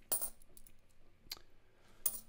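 US quarters clinking against one another as they are handled and sorted by hand: a quick jingle of several clicks right at the start, then a single sharp click a little past the middle.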